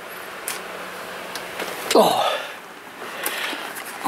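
A man's short breathy vocal sound, a grunt or sigh falling in pitch, about halfway through. Faint clicks and handling noise from the handheld camera lie over a steady low hiss.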